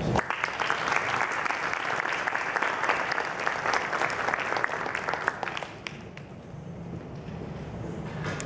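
Audience applauding, made up of many quick overlapping claps, dying away about six seconds in.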